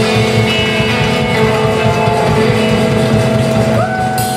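Live roots-rock trio playing an instrumental passage: electric guitar holding long sustained notes, one bent up in pitch near the end, over upright bass and drums.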